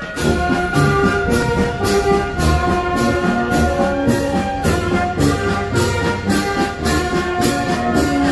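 A small street brass band of trumpets, sousaphone and bass drum playing a tune, with held brass notes over a steady drum beat.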